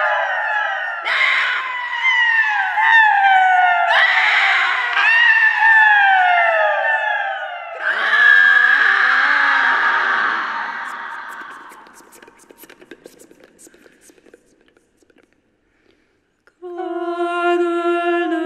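Several women's voices singing overlapping downward glides, each slide dropping in pitch over about a second, wave after wave. About eight seconds in they give way to a breathy, noisy sound that fades away to near silence, and near the end held sung notes begin.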